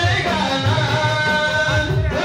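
Male voices singing a devotional chant into hand microphones, amplified through a sound system, over a steady low accompaniment.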